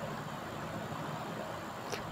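Faint, steady hiss of a curry cooking in an open pressure-cooker pot on the stove, with no stirring knocks.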